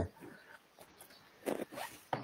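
A couple of short, faint rasping rustles about a second and a half in: handling noise from someone moving close to the microphone.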